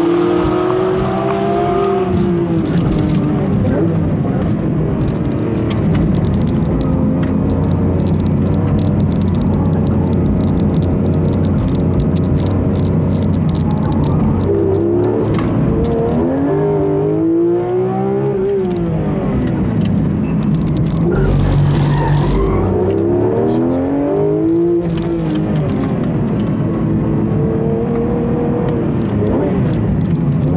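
Porsche 911 GT3 RS's naturally aspirated 4.0-litre flat-six driven hard on a lap. Its pitch falls under braking and climbs again under acceleration several times as it rises through the gears between corners.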